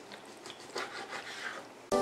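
Faint, soft sounds of a chef's knife slicing through raw chicken breast on a plastic cutting board. Near the end, louder music with steady held tones cuts in suddenly.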